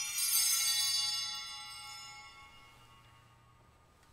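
Altar bells rung once at the elevation of the chalice, marking the consecration; the bright, shimmering ring dies away over about two seconds.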